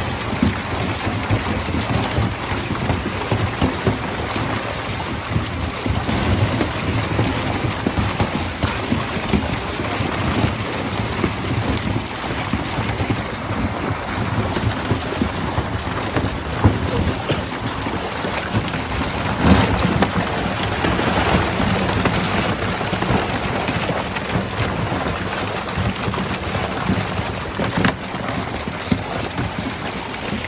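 Milkfish crowded in a seine net thrashing and splashing in shallow water: dense, continuous splashing, with a louder flurry about twenty seconds in.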